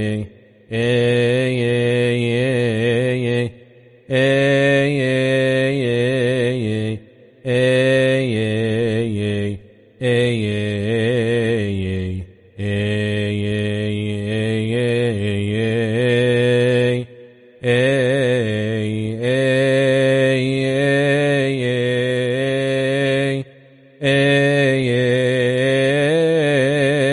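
A deacon chanting a Coptic psalm verse solo in slow, melismatic liturgical chant. Each long syllable is drawn out with wavering ornaments, in phrases of a few seconds broken by short breaths.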